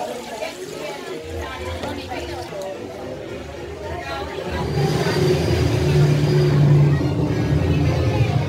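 Voices chattering over background music; about halfway through the music grows louder, with held low notes.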